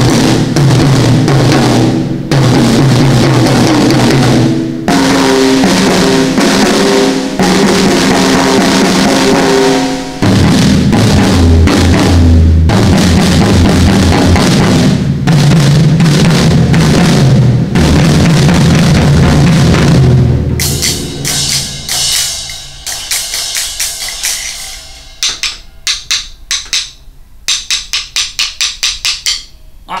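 Acoustic drum kit played with sticks, with toms, snare, bass drum and cymbals, over an orchestral film-score backing track. About two-thirds of the way through, the backing music drops away and the playing gets quieter, leaving separate drum hits, and near the end a quick run of evenly spaced strokes.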